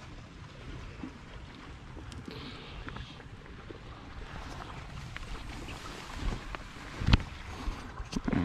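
Shallow creek water running over gravel, with a low rumble of wind on the microphone and a few small knocks; a sharper thump comes about seven seconds in.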